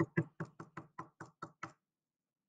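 A paint-loaded cork stopper dabbed quickly onto paper on a tabletop, printing dots: about nine short taps, roughly five a second, stopping just before the end.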